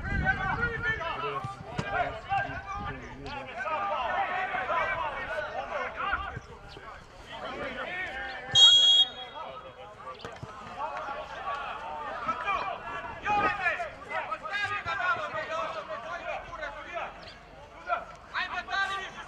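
Referee's whistle: one short, shrill blast about eight and a half seconds in, the loudest sound here, stopping play. Around it, men's voices shout and call across the football pitch.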